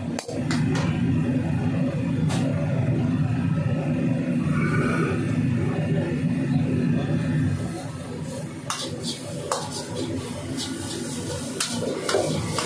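A commercial gas wok burner running with a loud, low rushing noise under an iron wok, easing off after about eight seconds. A steel ladle clinks and scrapes against the wok as the noodles are stirred.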